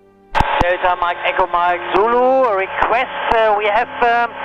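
Speech over the aircraft radio and intercom, thin and cut off above the middle range as a radio voice is, with a few sharp clicks. It starts about a third of a second in, after a brief near-silent gap.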